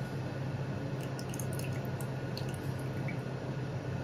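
Water trickling and dripping from a ceramic pouring bowl into a glass teapot onto gyokuro tea leaves, with small scattered drip ticks over a steady low hum.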